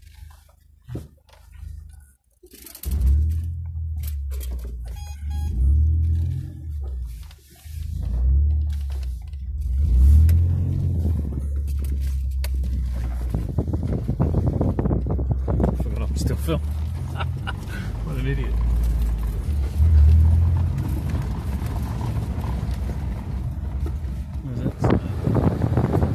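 Car engine running under the cabin as the car drives along a dirt road: a low hum that swells several times as it pulls away and picks up speed. From about halfway, tyre noise on the gravel grows louder.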